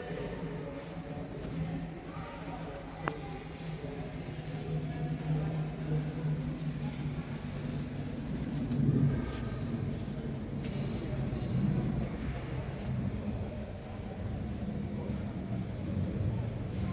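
Ambient sound of a large hall: indistinct background voices over a low steady hum, with a single sharp click about three seconds in.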